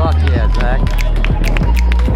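Hip-hop music track with a heavy bass line and sharp, regular drum hits, with voices over it.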